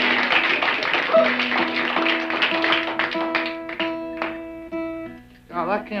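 Acoustic guitar being played: a busy patch of strumming at first, then single picked notes, several held and ringing out one after another. The player says he can't get the hang of the guitar tonight. A man's voice comes in near the end.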